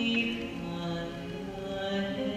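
Female vocal group singing slow, held notes in harmony.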